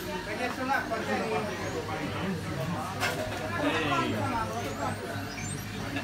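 Chatter of people in a busy shop over a steady low hum. Near the end come faint, very high-pitched beeps from a TrackR Bravo Bluetooth tracker ringing to be found.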